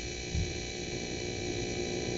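Steady background hum and hiss of the recording, with a brief low thump about half a second in.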